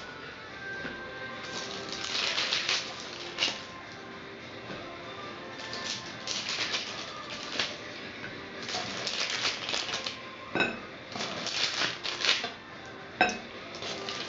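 A metal blade scraping along baking paper as it is worked under freshly baked cookies stuck to the paper, in several scraping strokes of a second or two each, with a couple of sharp taps of the blade near the end.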